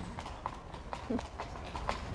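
A carriage horse's hooves clip-clopping on the pavement at a walk, a steady run of hoof strikes several times a second.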